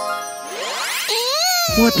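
Cartoon magic-sparkle sound effect: a bright, chiming run sweeping upward in pitch, with a voice coming in near the end.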